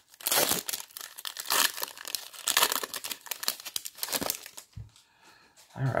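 Hockey card pack wrapper being torn open and crinkled by hand, a dense crackling for about four and a half seconds that then dies down.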